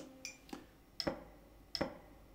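Metronome clicking a steady beat, about one click every three-quarters of a second (roughly 80 beats per minute). The tail of a chord on an archtop guitar dies away at the start.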